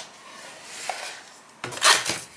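A cardboard puzzle box being unwrapped and opened by hand: a soft rustling rub of the cellophane wrap and cardboard, then a louder brief scrape near the end as the lid slides off the box.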